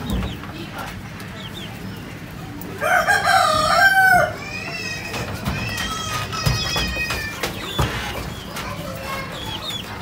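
A rooster crowing once, about three seconds in, a loud call lasting about a second and a half. Fainter, higher chicken calls follow for a few seconds afterwards.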